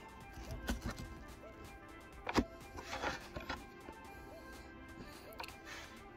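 Scattered soft keystrokes on a System76 Darter Pro laptop keyboard as a name is typed, the loudest click about two and a half seconds in, over faint background music.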